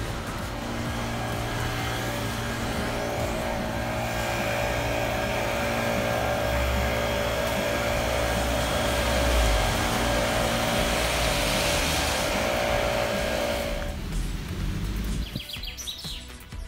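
Street traffic on a wet road: tyre hiss from passing cars swells through the middle and drops away near the end, with a steady music bed underneath.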